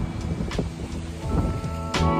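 Wind buffeting the microphone with a low rumble. Background music with steady sustained notes fades in over the second half.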